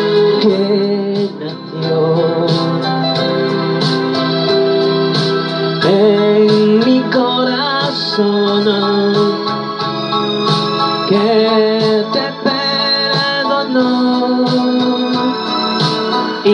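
A man singing a Spanish-language romantic ballad into a handheld microphone over a backing track of electronic organ with a steady beat.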